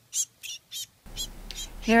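Yellow warbler caught in a mist net giving short, sharp chip notes, about three a second, while it is worked free by hand. A voice begins near the end.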